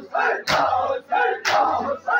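A large crowd of men performing matam, beating their bare chests in unison. There are two sharp beats about a second apart, with a loud group chant between them.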